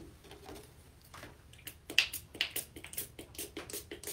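Small pump spray bottle misting water onto a watercolor palette to rewet the dried paints: a quick run of short spritzes, about four or five a second, starting about a second and a half in. Before that, faint handling of paper.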